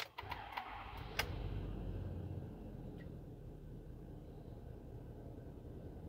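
The 6.7-liter Power Stroke V8 turbo diesel of a 2015 Ford F-350, heard from inside the cab. After a few clicks it fires about a second in, louder for a moment, then settles into a low, steady idle. It starts right up.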